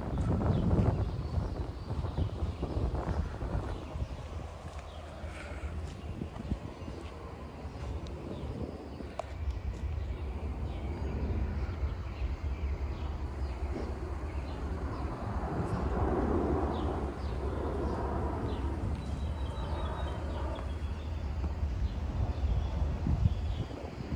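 Outdoor street ambience: a steady low rumble with a general hiss of open air, faint short chirps here and there, and a soft swell of distant sound in the second half.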